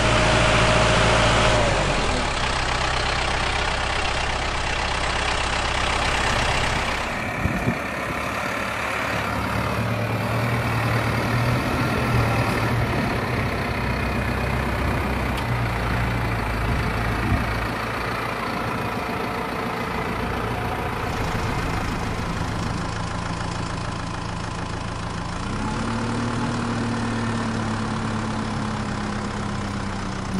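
Farm tractor's diesel engine running steadily while its front-end loader lifts a large square straw bale. The engine note steps up a little near the end as the tractor drives off with the bale.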